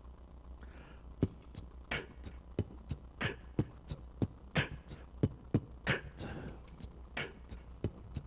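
Beatboxing: a man making a drum beat with his mouth, a run of sharp snare- and hi-hat-like clicks and pops at a few strokes per second.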